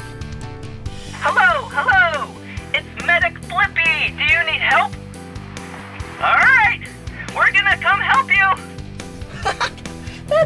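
A man's voice exclaiming in short, swooping bursts over steady background music.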